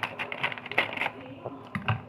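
Plastic food packet crinkling and crackling as it is handled, a run of irregular sharp clicks.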